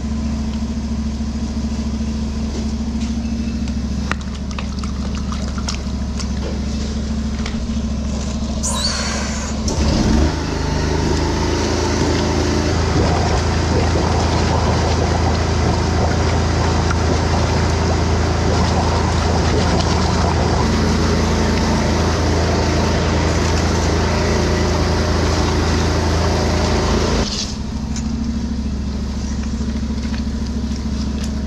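Drain jetter engine running steadily. About ten seconds in the high-pressure jet comes on, a loud steady hiss of water spraying from the hose nozzle in the drain, with the engine pulling harder, until near the end when the jet stops and the engine drops back.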